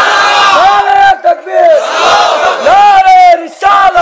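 A crowd of men chanting religious slogans in unison, in several loud phrases, some ending in a long held note.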